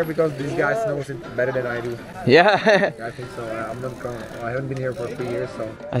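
Speech: people talking, with one voice briefly louder about two and a half seconds in.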